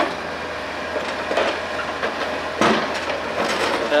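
Komatsu mini excavator running while it loads demolition rubble into a steel dump-truck bed, with stone and concrete rubble clattering and scraping; a louder clatter comes about two and a half seconds in.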